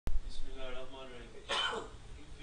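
A man's voice murmuring briefly, then a single cough about one and a half seconds in.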